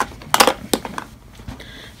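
Plastic makeup compacts and palettes clacking and knocking against each other as a hand moves them about in a drawer, with a few sharp clacks in the first second.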